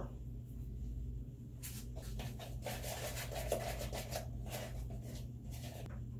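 Irregular scraping and rubbing from a plastic cup and mixing bowl as hair-bleach powder and cream developer are measured out and worked together by hand. It starts about a second and a half in and runs in quick, uneven strokes until near the end.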